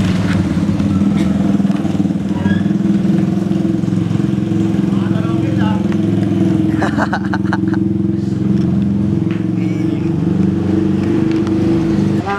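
A motor vehicle engine running steadily, a loud unchanging low hum, with voices over it. The hum stops abruptly at the end.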